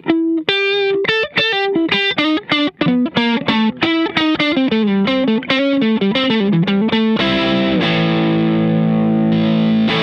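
Electric guitar (PRS SC245) played through the Carl Martin Quattro's overdrive: a quick single-note lead phrase of separately picked notes with light overdrive. About seven seconds in it gives way to a held chord with heavier distortion, as the guitarist switches between the pedal's drive settings.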